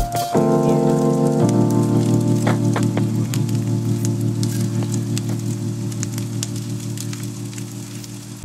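Background music: a held synth or keyboard chord slowly fading out, with a light crackle over it.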